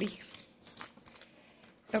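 Newspaper crinkling in a few short, sparse crackles.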